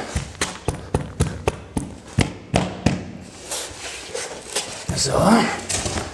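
A quick run of light knocks and taps on gypsum-fibre dry-screed floor boards as they are handled at a freshly glued tongue-and-groove joint. The knocks come about three a second for the first three seconds, then grow sparser.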